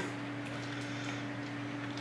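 Quiet room tone with a steady low hum made of two unchanging tones.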